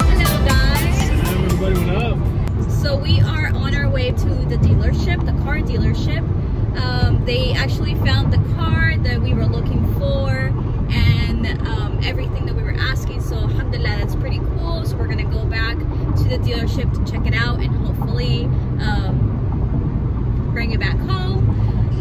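Steady low rumble of road and engine noise inside a moving car's cabin, under talking; background music fades out in the first couple of seconds.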